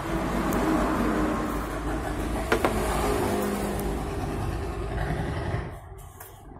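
A motor vehicle engine running close by, with one sharp click about two and a half seconds in. The engine noise drops away abruptly near the end.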